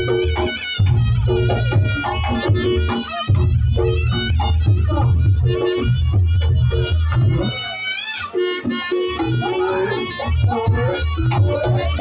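Live Reog Ponorogo gamelan accompaniment: drums and gongs beating a steady rhythm under a wavering, reedy melody from a slompret (Javanese shawm).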